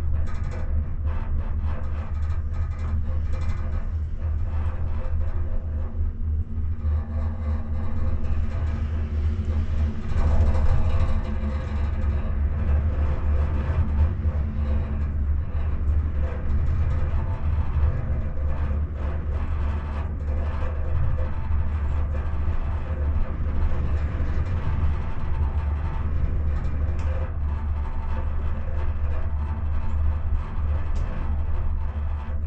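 Steady low rumble of an enclosed gondola cabin travelling along its cable, with light clicks and rattles from the cabin. The rumble swells briefly about ten seconds in.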